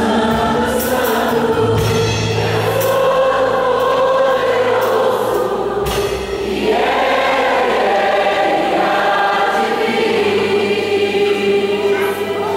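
Live gospel worship band and a group of singers performing: long held sung notes over keyboard, guitars and drums, with cymbal crashes near the start and one about six seconds in, where the chord changes.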